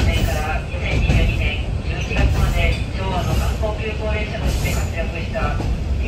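Cabin noise inside a diesel railcar on the move: a steady low engine and rail rumble, with an on-board loudspeaker announcement voice running over it.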